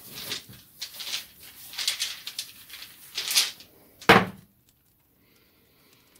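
Divination dice being shaken and rummaged in a small bag: light rustling with irregular small clicks of the dice against each other. About four seconds in there is one sharp knock, the loudest sound, then quiet.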